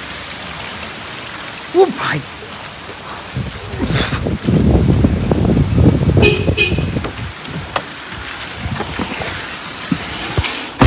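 Steady rain falling, with a louder low rumble through the middle. About six seconds in, a short high electronic chirp, the car's lock beeping as it is unlocked with the key fob.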